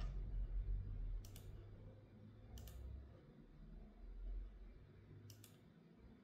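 A few faint, sharp clicks spaced a second or more apart, the last one doubled, over a low hum.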